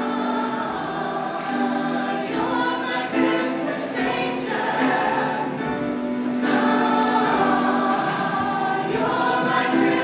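Mixed choir of teenage voices singing a song in harmony, holding long chords.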